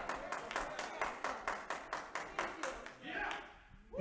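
Fast, steady hand clapping from the congregation, about five claps a second, fading out about three seconds in, then a brief faint voice.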